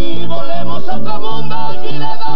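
Vallenato band playing: a male lead voice sings over button accordion, with a bass line pulsing underneath.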